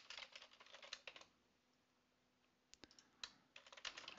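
Faint typing on a computer keyboard: a quick run of key clicks, a pause of about a second and a half, then another run of clicks.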